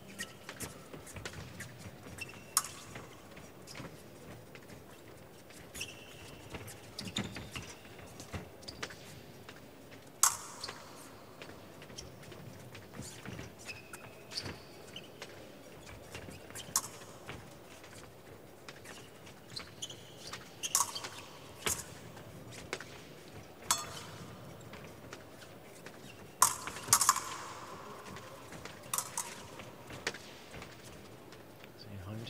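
Épée bout in progress: fencers' shoes squeaking and stamping on the piste, and blades clicking and clinking together at irregular moments, sharpest a little after 10 s, around 21 s and in a quick cluster near 27 s.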